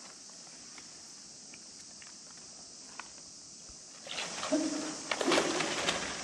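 Thin plastic floor sheeting rustling and crackling under a body sliding and rolling across it, starting about four seconds in after a quiet stretch. A short low-pitched tone sounds in the middle of the rustling.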